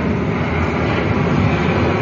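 Airplane flying past, a steady engine noise with no breaks.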